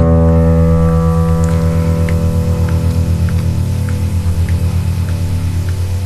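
Yamaha P-105 digital piano sounding a single low E (E2, the guitar's sixth-string pitch), held for about six seconds and slowly fading, its upper overtones dying away first.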